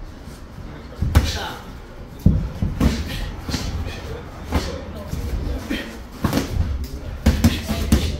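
Boxing gloves landing punches in sparring: an irregular string of sharp smacks and thuds, several seconds' worth, the loudest about one and two seconds in.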